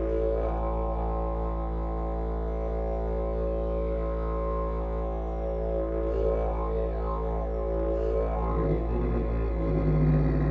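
Wooden didgeridoo playing a steady low drone, its overtones sweeping up and down as the player shapes the sound, with a change in tone near the end.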